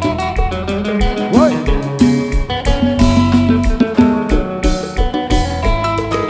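Konpa dance music: bright guitar lines over bass and a steady kick drum about twice a second, with one bent note gliding up and back down about one and a half seconds in.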